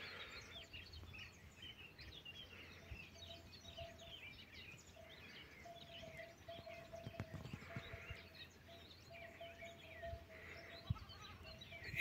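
Faint countryside ambience: small birds chirping on and off, with a faint low note repeated in short, even dashes from about three seconds in.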